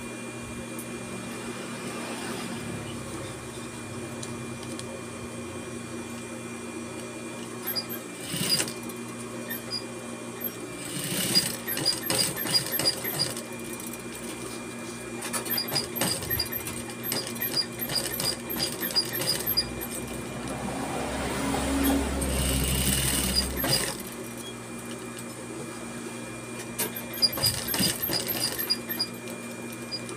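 Industrial sewing machine stitching a velcro strip onto fabric in several short runs, the longest and loudest about two-thirds of the way in. Its motor hums steadily between runs.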